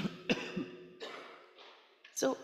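A woman clearing her throat with a few short coughs close to a handheld microphone. The first is loudest, and the later ones fade off over the second half.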